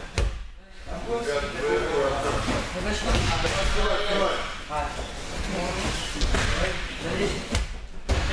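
Judo throws landing on the mats: a few dull thuds of bodies hitting the mat, amid background voices of boys talking.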